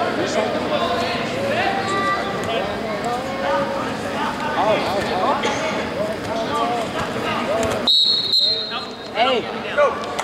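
Busy wrestling gym: overlapping voices from around the hall, with short squeaks of wrestling shoes on the mat. A referee's whistle sounds once, a steady high note lasting about a second, about eight seconds in.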